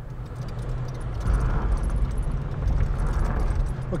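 Interior noise of a 1975 AMC Hornet with its 304 V8 under way: a steady low engine and road drone, with faint light rattling from the cabin.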